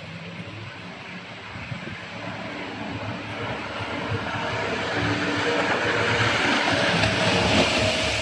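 Shotover Jet boat's engine and water jet, with the rush of churned water, growing steadily louder as the boat speeds closer.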